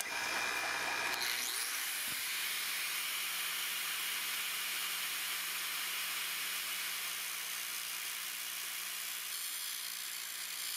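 An angle grinder running steadily over a steel pommel that spins in a homemade lathe, the lathe's motor humming underneath. Near the end the disc starts grinding into the spinning steel, cutting a step down into its domed top.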